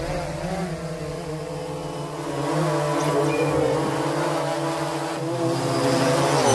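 Quadcopter drone's propellers whirring, a steady multi-tone buzz that wavers slightly in pitch and grows a little louder about halfway through.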